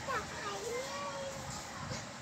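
A young child's voice, soft and wordless in a sing-song, holding one long note in the middle.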